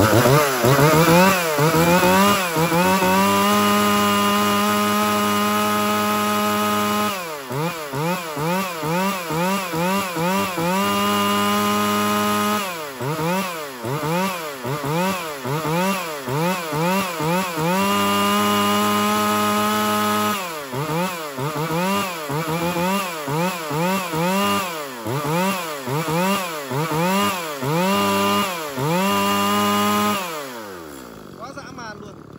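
Shindaiwa 1039S 40 cc two-stroke chainsaw engine being run on test. It revs up to a steady high-pitched full-throttle run and holds it for a few seconds, three times over, with stretches between of quick throttle blips, about two revs a second.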